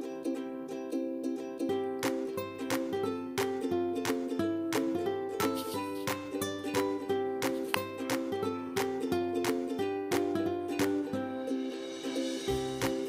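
Background music: a light tune of quick plucked-string notes, with a bass line that comes in about two seconds in.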